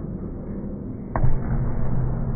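A volleyball impact: one sharp smack about a second in, over the steady low noise of a sports hall, which grows louder after it.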